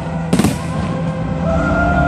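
An aerial firework shell bursting with a single sharp bang about a third of a second in, over steady music.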